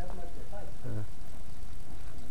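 A voice speaks a few indistinct words in the first second, over a steady low rumble.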